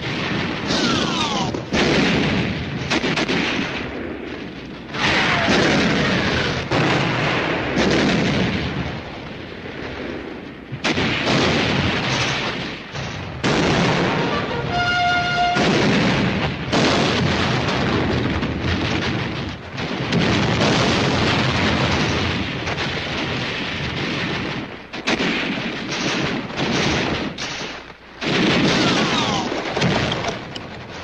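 Film battle sound effects: a continuous barrage of artillery explosions and gunfire with repeated sudden blasts, and falling whistles of incoming shells before some of them.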